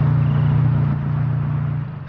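Gas flare burning at the top of a flare stack: a steady, low-pitched roar of combustion that eases slightly in the second half.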